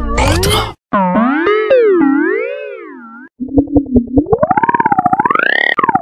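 Logo jingle audio under a heavy pitch-wobble effect: a short sting cuts off just under a second in, then a held synthesizer-like note swings slowly up and down in pitch and fades. After a brief gap, a rapidly pulsing tone starts, its pitch also swinging up and down.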